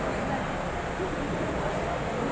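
Faint, indistinct voices over a steady hum of room noise.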